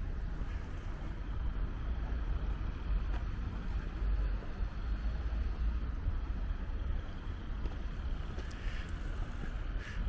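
City street ambience dominated by a steady low rumble of wind buffeting the microphone, with a faint hum of distant traffic beneath it.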